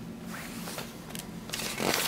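A picture-book page being handled and turned: paper rustling and sliding under a hand, growing into sharper scratchy strokes in the last half second.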